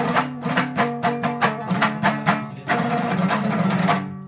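Hazaragi dambura, a long-necked two-string lute, strummed in a fast, even rhythm of a folk tune. About two-thirds of the way in the strumming turns denser and more continuous.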